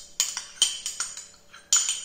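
A metal spoon clinking and scraping against a ceramic ramekin while capers are spooned out: about four sharp clinks spread over two seconds, each with a brief ring.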